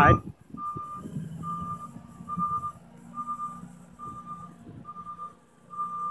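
Vehicle backup alarm beeping at a steady, even pace, a single tone a little more than once a second, over a low steady hum.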